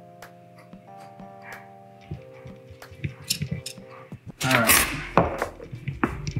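Soft background music with held notes, with faint ticks over it. About four and a half seconds in comes a louder clatter and scraping of a metal whisk beating the egg-and-milk mixture in a plastic bowl.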